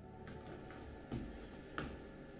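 Four light clicks about half a second apart, the last two louder, over a low steady room hum.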